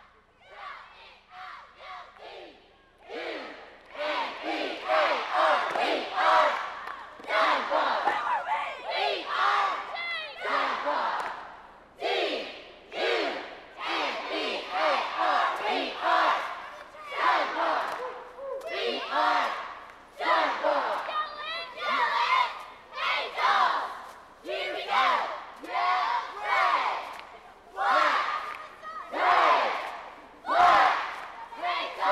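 A cheerleading squad yelling a cheer in unison, short shouted phrases about once a second, starting quieter and becoming loud about three seconds in.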